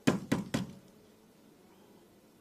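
Three quick, sharp knocks on a wooden tabletop within about half a second, as chicken is taken from a foil tray, then a quiet room.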